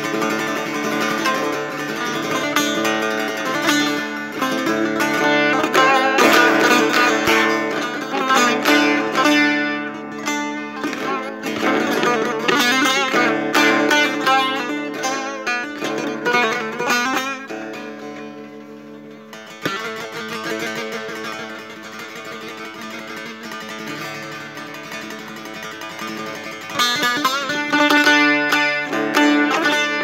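Setar, the Persian long-necked lute, played in free improvisation: quick runs of plucked notes over a steady ringing drone. The playing falls to a softer passage about two-thirds of the way through, then grows loud again near the end.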